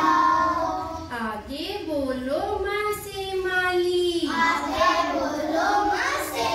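A group of children singing a Hindi alphabet song (varnamala geet) together, holding one long note through the middle.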